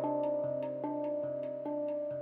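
Steel handpan struck with the hands in a steady pattern of about two or three notes a second, each note ringing on into the next.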